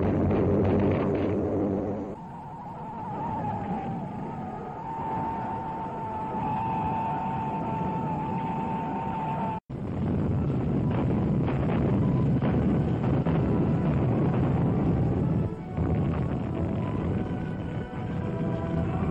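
Film soundtrack music with a long held high note for several seconds, cut off abruptly about ten seconds in. After the cut comes a dense low rumble mixed under the music.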